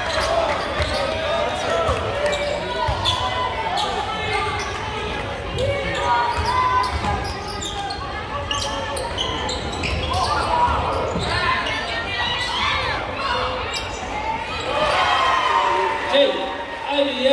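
Basketball being dribbled on a hardwood gym floor during play, a run of sharp bounces, with spectators talking and calling out in a large, echoing gym.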